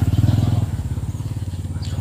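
A motorbike engine running nearby with an even low pulse, loudest at the start and fading over the two seconds.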